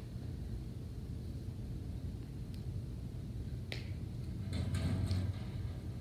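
A small plastic craft-glue bottle being handled, with one sharp click a little under four seconds in and light rustling around five seconds, over a steady low hum.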